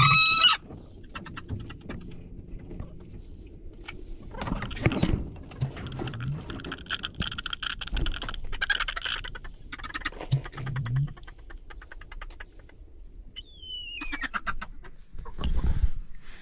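Chickens clucking and calling, with a loud squawk right at the start and a short falling call a couple of seconds before the end.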